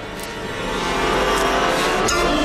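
Horror film soundtrack swelling: a dense, droning mass of sustained tones and hiss that grows steadily louder over about the first second, then holds, building tension ahead of a reveal.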